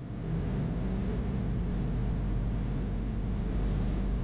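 Steady background hiss with a low rumbling hum and no speech.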